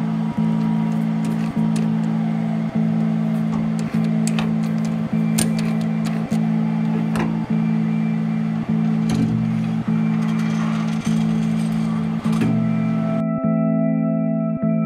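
Background music: a guitar-led track with a steady beat that pulses about once every second and a bit.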